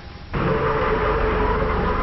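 A motor vehicle running steadily, cutting in suddenly about a third of a second in, with a steady hum and a held tone.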